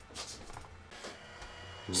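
Braun Series 9 cleaning station running its air-drying stage, a faint steady hum, with a few brief rustles as the camera is picked up and handled.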